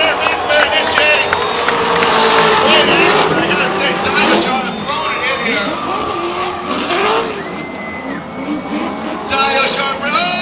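Drift cars in a tandem battle, engines revving hard with the pitch rising and falling, and tyres squealing as they slide. The sound eases a little in the later part before picking up again near the end.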